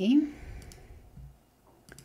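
A single sharp computer-mouse click near the end.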